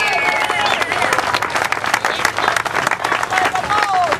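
A large crowd applauding: many hands clapping fast and densely, with voices calling out over it at the start and near the end.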